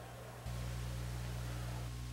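Low, steady electrical hum under faint hiss, with no other sound. The hum steps up in level about half a second in and then holds steady.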